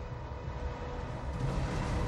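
Steady noise and low rumble with a faint constant hum, the background of an old archival film soundtrack, growing slightly louder about halfway through.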